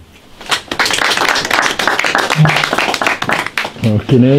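A small audience applauding, the clapping starting about a second in and dying away near the end.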